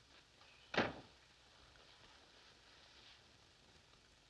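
A door closing once, about a second in, a single sharp knock-like shut. After it there is only faint room tone.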